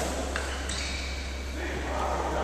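Sounds of an indoor badminton court: a sharp tap right at the start and another about a third of a second later, with indistinct voices, echoing in a large hall.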